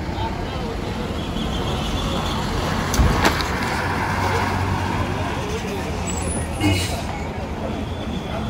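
Diesel engine of an old red MSRTC ordinary bus running as the bus drives past close by, with a loud knock about three seconds in and a second, shorter one near the end.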